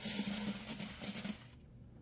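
Quarters pouring out of a long metal vending-machine coin box into a plastic bucket, a steady rush of sliding coins that stops about a second and a half in.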